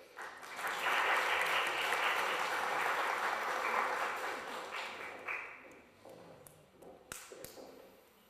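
Audience applauding, swelling up within the first second, holding steady for several seconds and dying away about six seconds in; a few faint knocks follow near the end.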